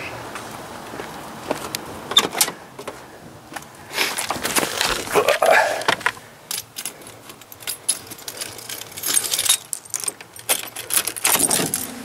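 Keys jangling with irregular clicks and knocks as the driver handles the door and ignition of an old Ford pickup. No engine sound follows; the truck fails to start, which the owner puts down to a loose battery cable.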